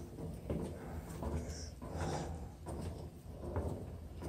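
Footsteps going down steel stairs, about two steps a second, each landing as a short knock on the treads, over a steady low hum.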